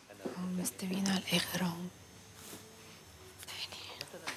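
Hushed speech: a voice speaking quietly for about a second and a half, then low room tone for the rest.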